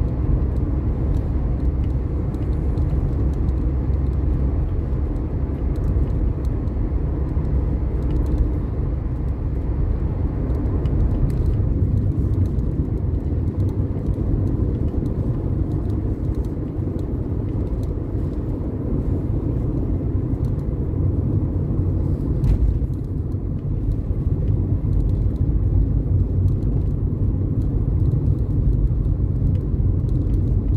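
Steady low rumble of a car driving along a highway, heard from inside the cabin: tyre and engine noise.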